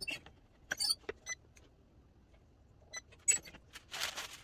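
Metal clicks and clinks from a swing-away heat press as its handle is worked and the upper heat platen is opened and swung aside: a cluster of sharp clicks about a second in and another near three seconds. Parchment paper rustles at the very end.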